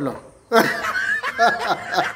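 A man's voice trails off, and after a short pause, about half a second in, he breaks into chuckling laughter.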